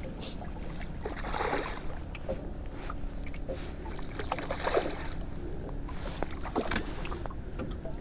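Water lapping against a small aluminium boat's hull, with light wind noise and a few faint clicks.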